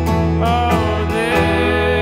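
Country-folk band music in an instrumental passage: guitars over a steady low bass, with sharp percussive hits.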